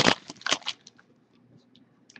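Foil trading-card pack wrapper crinkling as it is pulled open, with a loud crackle at the start and another about half a second in, then a few faint ticks as the cards come out.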